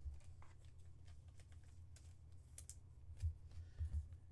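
Faint, scattered clicks and taps of trading cards being handled, slid and set down on a tabletop mat, over a low steady hum; a couple of louder taps come near the end.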